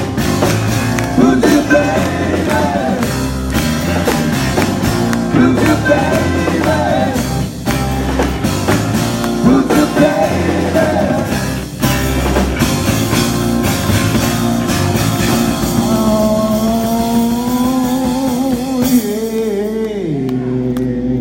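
Rock band playing live acoustic: a lead voice singing over acoustic guitar and drums, with the audience clapping along. A long held sung note comes near the end.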